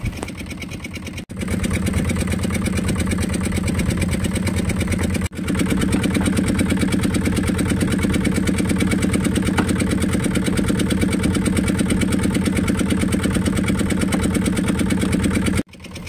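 A small fishing boat's engine running steadily with an even, rapid firing beat. It is quieter for the first second, then breaks off briefly and comes back louder, and breaks again about five seconds in.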